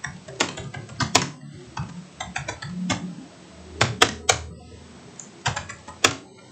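Typing on a computer keyboard: irregular bursts of key clicks, some strokes louder than others, as a sentence is typed out.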